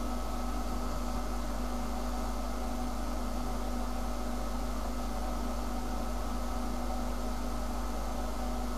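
Steady background hiss with a low electrical hum and faint steady tones, unchanging throughout: the noise floor of an open recording microphone.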